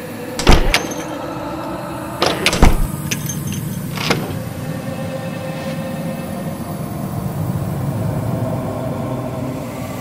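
Door handles and latches clicking and knocking as doors are opened, five sharp clicks in the first four seconds, over a steady low rumble.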